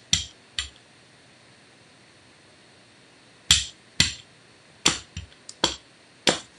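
Sharp knocks and taps of hard craft tools, among them a Gelli brayer, being handled and set down on a tabletop: a couple in the first second, then a quicker string of them in the second half.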